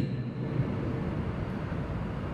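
Steady low background hum and hiss of room noise, with a faint steady tone, picked up by a lecture microphone.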